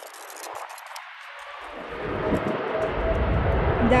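American Airlines Boeing 787's two jet engines spooling up for takeoff: a rumble with a steady whine that builds from about a second and a half in and grows much louder near the end. Really loud.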